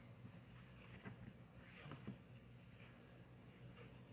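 Near silence: faint room hum with a few soft rustles of thread and fabric as hands tie a knot in sewing thread.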